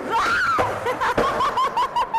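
A woman laughing: one high squeal, then a quick run of short, high-pitched laughs, about four a second. There is a short knock about a second in.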